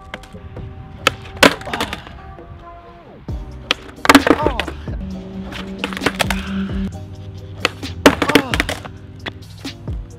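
Background music with a steady beat, over the clatter of a skateboard on a concrete sidewalk: sharp board slaps and wheel knocks from failed ollie attempts, loudest about four seconds in and again about eight seconds in.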